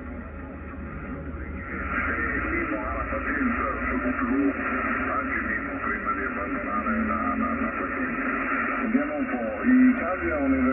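Human voice of a distant amateur station received on 40-metre lower sideband, coming from the speaker of an ICOM IC-756 HF transceiver. The audio is narrow and thin, cut off above about 3 kHz, over band noise, and it comes up louder about two seconds in as the signal is tuned in.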